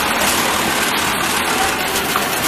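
Steady machine din of a garment factory floor, with industrial sewing machines and other machinery running at an even level.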